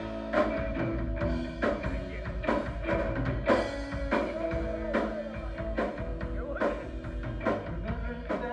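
Rock band playing live on electric guitars, bass, drums and violin, an instrumental passage with held notes over a steady drum beat.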